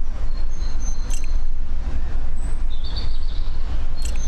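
A steady, deep rumble with a few faint thin high tones over it, and a short sharp click about a second in.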